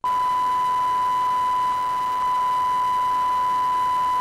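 Steady line-up test tone on a news agency's broadcast audio circuit: one unbroken high pitch with faint overtones over a light hiss, filling the gap between repeats of the spoken circuit ident.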